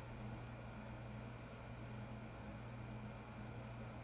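Faint steady room tone: a low hum under an even hiss, with no distinct events.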